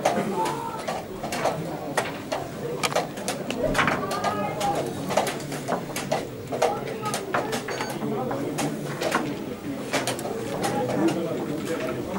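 A steady murmur of voices in the playing hall with many irregular sharp clicks, typical of wooden chess pieces being set down and clacking on boards.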